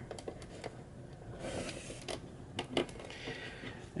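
Faint handling noise: a few scattered light clicks and taps, with a short rustle about one and a half seconds in.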